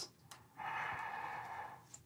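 A woman with a ball gag in her mouth taking one long, deep breath that lasts just over a second.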